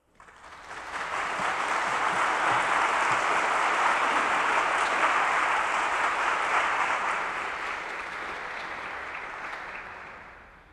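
Audience applauding: the clapping swells within the first second, holds steady, then tapers off over the last few seconds.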